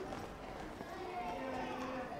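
Faint background chatter of children and adults milling together.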